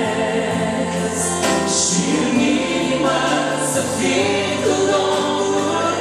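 Live Christian worship song in Romanian: a man and a woman singing over instrumental accompaniment.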